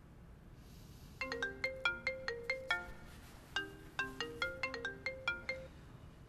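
Mobile phone ringtone for an incoming call: a short melody of quick, bright, pitched notes, played through twice with a brief gap between.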